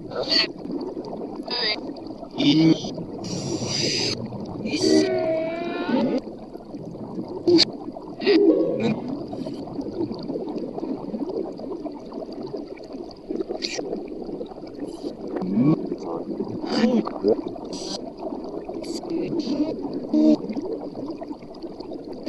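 ITC spirit-box style audio: a rapid stream of short, chopped fragments of reversed, remixed speech, broken up with clicks and bursts of hiss, over a faint steady high whine.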